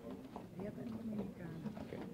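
Quiet, indistinct talking in a small room: low voices murmuring, with no clear words.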